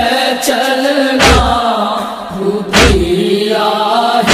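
Men's voices chanting a Muharram lament, held sustained notes, over a deep thumping beat that falls about every one and a half seconds, twice here.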